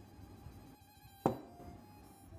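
A single sharp click a little past the middle, over quiet room tone.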